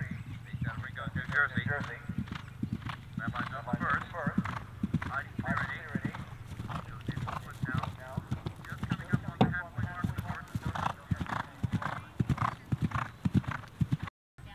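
Hoofbeats of a horse cantering over grass turf, a quick run of hoof strikes throughout.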